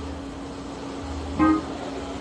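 Music played through a large speaker-wall sound system during a quieter passage: one held note over a low bass, with a short burst of notes about one and a half seconds in.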